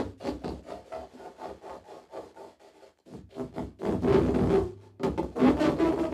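Amplified pane of glass played with the mouth and hands through a contact microphone: a run of quick rubbing strokes, about five a second and slowing, then after a short gap two longer, louder rubbing passes in the second half.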